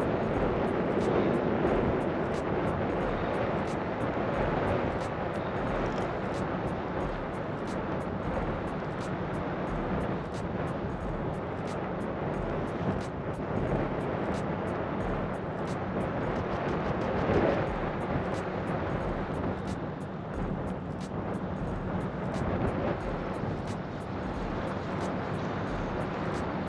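Wind blowing over the microphone: a steady rushing noise, with a faint low hum underneath.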